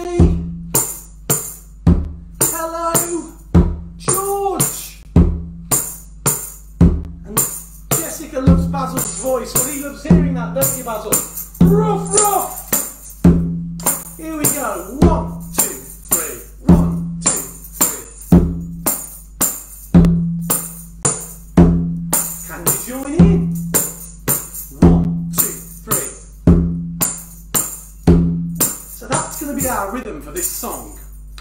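A headed tambourine with jingles and a conga-style hand drum played by hand in a steady beat, the tambourine's jingles ringing on each stroke and the drum giving a low tone at regular intervals. A man's voice joins over the beat at times.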